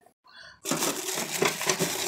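Plastic crinkling and rustling as packaged items are handled, starting about half a second in after a brief silent gap.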